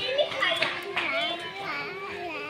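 Children's voices chattering and calling, with one voice drawn out in a long wavering call from about half a second in.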